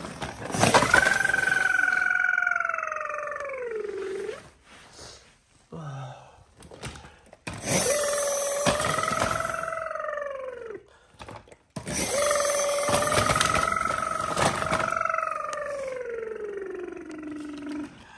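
Battery-powered toy police car playing its electronic sound effect three times. Each time a long high tone holds over a harsh hiss, then drops in pitch as it ends.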